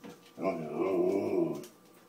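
Siberian husky "talking": one drawn-out, wavering vocal call lasting about a second, starting about half a second in, as he demands his dinner.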